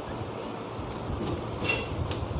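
Steady background noise with a low hum, and a brief high-pitched burst near the end.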